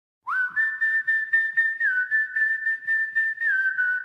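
A long whistled tone, high and clean, held with two small steps down in pitch and pulsing about four times a second.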